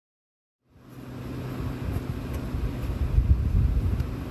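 A pickup truck's engine idling with a steady low hum, under wind buffeting the microphone. The sound fades in less than a second in.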